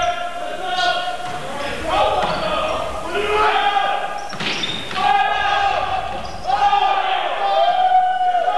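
Indoor volleyball rally on a hardwood gym floor: a few sharp smacks of the ball being served and hit, among a string of drawn-out high squeaks and calls from players moving on the court, echoing in the hall.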